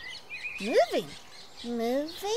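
A cartoon child's voice making wordless sounds: an 'ooh' that rises and then falls in pitch about a second in, and a rising hum near the end. A short high chirp comes just before them.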